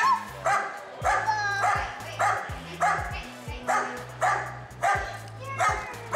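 A dog barking in a steady rhythm, a little under two barks a second, over background music with a bass line.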